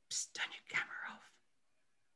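A person whispering a short phrase lasting just over a second.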